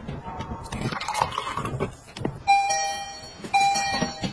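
Electronic door chime sounding twice, about a second apart: a single clear tone each time that fades away.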